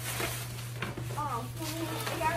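Tissue paper rustling and crinkling as it is pulled out of paper gift bags, with a brief quiet voice a little past a second in.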